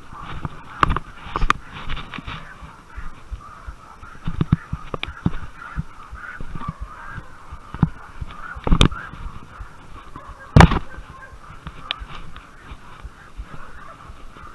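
Hurried footsteps crashing through leaf litter and brush, with sharp knocks and bumps against the body-worn camera, the loudest two about 9 and 10½ seconds in. Under them runs a faint, unbroken chorus of distant animal calls.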